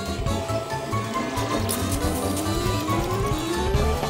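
Upbeat cartoon background music with a steady, repeating bass beat. A rising tone climbs slowly in pitch from about a second in until near the end.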